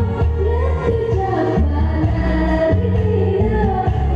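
A woman singing karaoke into a microphone over a backing track with a steady bass line.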